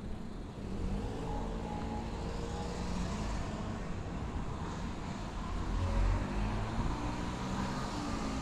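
Small cars and a kei truck driving past one after another on a narrow street: engine hum and tyre noise, loudest about six seconds in.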